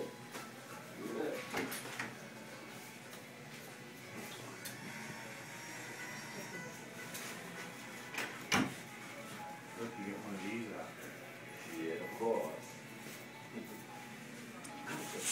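Barbershop background: indistinct voices and music playing over a steady room hum, with one sharp click a little past the middle.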